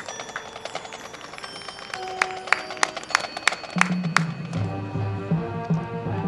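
High school marching band playing a soft passage. Held notes give way, about two seconds in, to a run of sharp, bright struck notes from the front-ensemble percussion. Low brass comes in with loud sustained notes shortly before the end.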